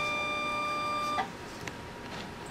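Quick Scan 1000 progesterone analyzer giving a steady electronic tone as a test is started. The tone cuts off with a small click about a second in.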